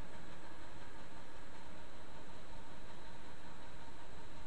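Steady background hiss from the recording microphone, with a faint hum underneath; nothing starts or stops.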